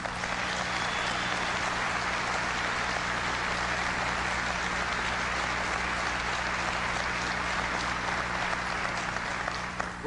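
Large audience applauding: dense, steady clapping that holds level and tails off just at the end.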